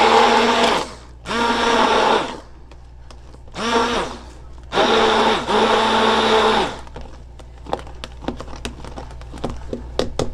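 Handheld stick blender run in four short bursts, mixing a hydroxyethyl cellulose gel in a beaker; the motor holds one steady pitch in each burst and winds down as it is switched off. Scattered light clicks and knocks follow in the last few seconds.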